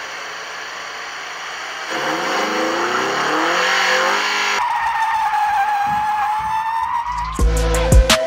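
Intro sound effects of a car: a rushing noise, then an engine revving up in rising pitch for a couple of seconds, cut off by a tire squeal held for about two seconds. A beat with heavy bass drum starts near the end.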